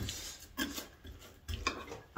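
Small metal measuring cup pressing a sticky cornflake mixture into a glass baking dish, giving a few soft knocks and scrapes.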